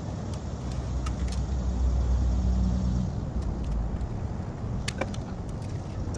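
Low engine rumble of a motor vehicle, swelling for a couple of seconds about a second in and then easing off. A few light clicks of hands and a tool working at rubber heater hoses come over it.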